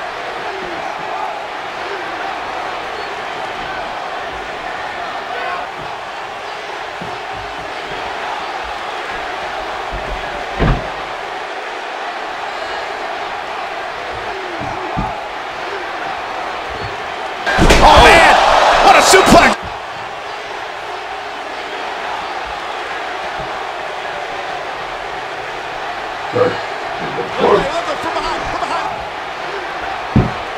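Wrestlers' bodies thumping onto a bed mattress during a staged wrestling bout, over a steady background noise. There is a single knock about ten seconds in, a very loud burst lasting about two seconds just past the middle, and a few more knocks near the end.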